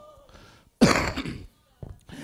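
A man clearing his throat once, about a second in, a short rasping burst that dies away quickly, followed by a brief click.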